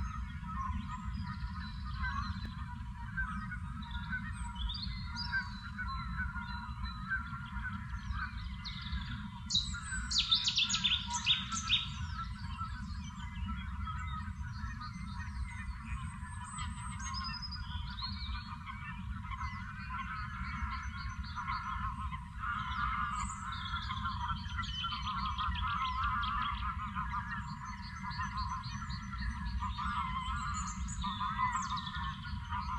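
A mixed chorus of birds calling and singing over a steady low rumble, with a louder run of sharp, rapidly repeated calls from about ten to twelve seconds in.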